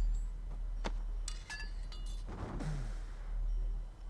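Trailer soundtrack with a few light metallic clinks and short ringing chime-like tones in the first half, and a brief rustling burst about halfway. A steady low electrical hum runs underneath.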